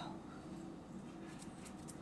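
Quiet room tone with a faint hum and a few faint, light ticks in the second half, from floury hands handling sticky dough on a counter.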